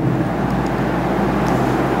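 Steady background noise: an even hiss over a low hum, with no distinct events.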